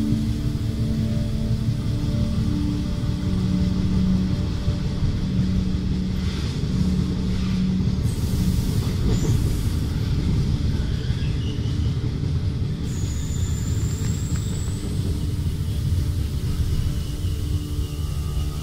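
Electric passenger train running on the tracks, heard from inside the carriage as a steady low rumble. Soft, sustained ambient music tones sit over it in the first half and fade out about eight seconds in.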